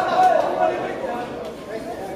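A voice calling out loudly in the first moment, then fainter chatter, in the echo of a sports hall during a boxing bout.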